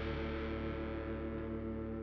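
Distorted electric guitar chord held and ringing out, slowly fading as its brightness dies away.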